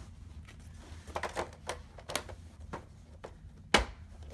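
Light clicks and taps of a clear plastic insert tray and game tokens being handled in a cardboard board-game box, with one sharp knock near the end.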